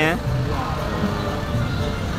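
A steady low background rumble after a single spoken word at the start.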